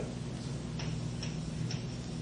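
Writing on a board during a lecture: a few short, sharp taps at uneven intervals as the writing implement strikes the board, over a steady low hum.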